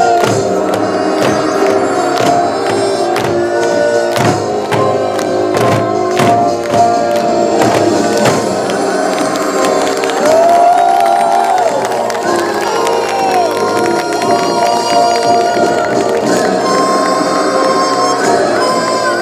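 Korean traditional folk music for a dance: regular drum strikes, heaviest in the first half, under sustained melodic instrument lines, with crowd-like shouting and cheering voices mixed in.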